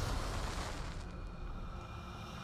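A match flaring into flame, played as an amplified film sound effect: a rush of noise with a deep rumble, fading away over the two seconds.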